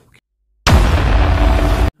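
A loud burst of rushing noise, heaviest in the low end, starting abruptly after a moment of dead silence and cutting off sharply after a little over a second.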